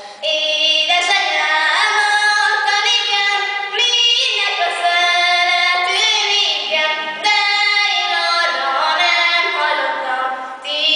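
A young woman singing a Hungarian folk song solo and unaccompanied, in long held notes, with short breaths between phrases about four and seven seconds in.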